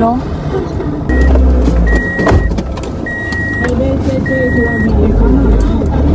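A car's electronic warning chime beeping four times at one steady pitch, each beep about half a second long and a little over a second apart, over a low rumble inside the car.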